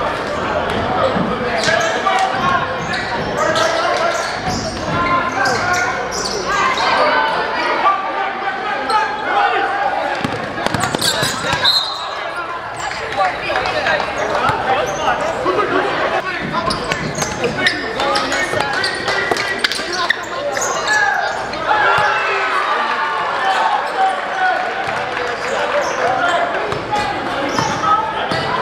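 Basketball game sound in a gym: many voices from the crowd and players chattering and calling out throughout, with a basketball bouncing on the hardwood floor at intervals.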